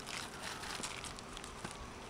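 Faint rustling with scattered light clicks and ticks: hands handling a string line at the end of an aluminium solar racking rail.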